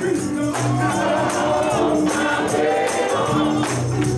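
Live gospel music: a vocal group singing over electric guitar and drums, with a steady percussion beat.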